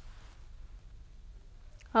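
Quiet room tone with a low, steady hum and no distinct sound; a woman starts speaking right at the very end.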